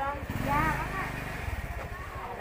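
Indistinct voices over a low engine rumble from a motor vehicle, which fades about one and a half seconds in.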